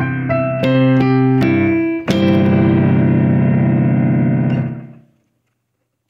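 A few single notes, then a big C major chord struck about two seconds in, ringing and slowly dying away over the next three seconds.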